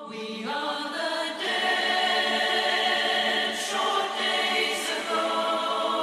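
A choir singing long held chords in a slow vocal piece, the chord shifting every second or so, with no words made out.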